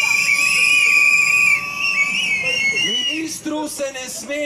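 Shrill, sustained whistling from the rally crowd, one high tone held with smaller wavering whistles around it, stopping about a second and a half in. A man's voice over the loudspeaker follows near the end.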